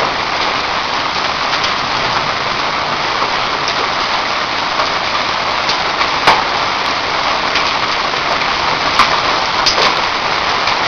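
Heavy thunderstorm rain mixed with hail, falling in a steady, dense hiss. A few sharp clicks of hailstones striking hard surfaces stand out, the loudest about six seconds in and two more near the end.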